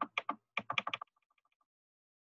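Computer keyboard keys pressed in a quick run of short clicks, about eight in the first second, followed by a few faint ticks.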